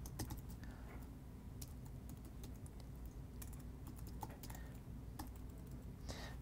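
Faint typing on a computer keyboard: an irregular run of key clicks.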